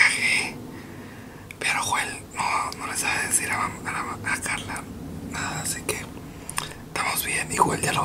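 A man whispering to the camera in short phrases with brief pauses.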